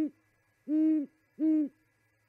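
Great horned owl hooting: the end of one hoot as it opens, then a longer hoot about two-thirds of a second in and a shorter one about a second and a half in, each a low, even note.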